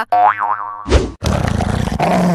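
A springy cartoon 'boing' sound effect with a wobbling pitch, then, about a second in, a sudden hit followed by a dog growling.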